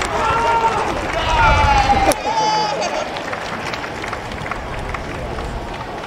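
Football supporters shouting and calling out, several loud voices in the first few seconds, over a steady background of crowd chatter.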